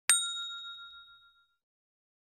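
Notification-bell ding sound effect of a subscribe-button animation. It is a single bright ding, struck once just after the start, ringing and fading away over about a second and a half.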